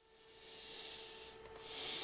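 Soft hiss-like noise at a close microphone, swelling twice, over a faint steady electrical hum.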